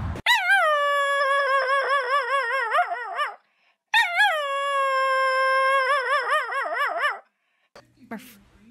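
A dog howling: two long howls, each starting high, sliding down to a held note and wavering toward the end.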